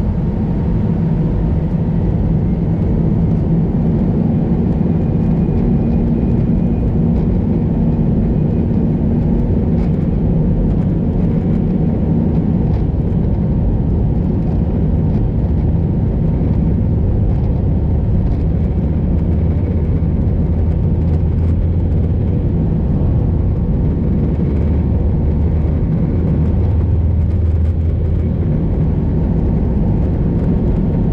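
Airbus A320 cabin noise on the ground: a steady rumble of the engines and rolling gear with a faint, even whine over it. About halfway through the rumble shifts deeper and grows stronger.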